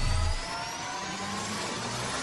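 Intro-animation sound effect: a noisy riser with several tones gliding slowly upward, over a low rumble that drops away about half a second in.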